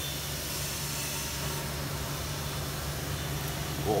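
Steady background noise: an even hiss with a continuous low hum underneath, unchanging throughout.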